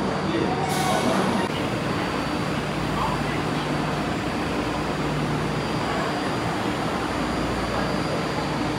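Tokyo Metro 02 series subway train standing at an underground platform with its doors open, its equipment humming steadily. Voices are heard in the first second and a half.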